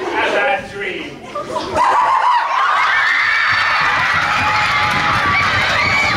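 A crowd of many voices cheering and shrieking, breaking out suddenly about two seconds in and staying loud and steady, after a moment of scattered talk and laughter.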